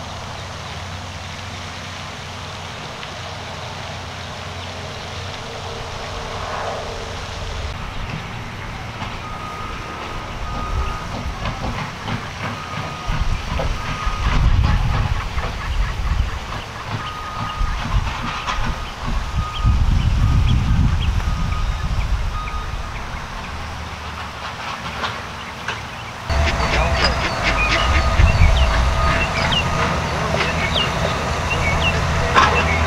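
Outdoor background noise with irregular gusts of wind rumbling on the microphone. A short high beep repeats through the middle, and quick high chirps come in near the end.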